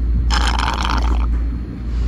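A sip from a can of root beer: a short slurping draw of about a second, starting a moment in, over a steady low hum.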